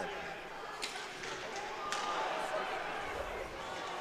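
Ice hockey play on the rink: a few sharp knocks of stick, puck or boards, about one and two seconds in, over a steady background of spectators' voices.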